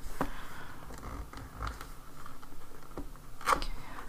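Hands rubbing and sliding on a cardboard box as it is being opened, with faint scraping and a sharper click near the end.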